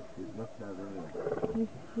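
People's voices talking quietly, in short broken phrases.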